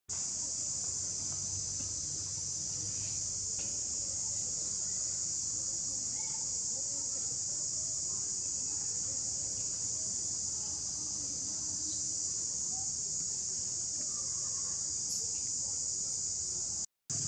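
A continuous, high-pitched buzzing chorus of insects, steady without a break.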